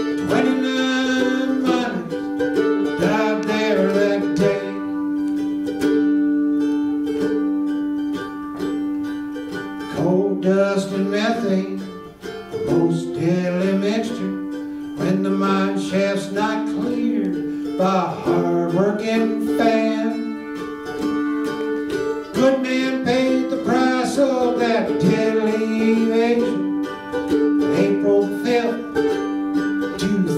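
Solo acoustic music on a small stringed instrument, with notes held for several seconds. A voice joins in several times.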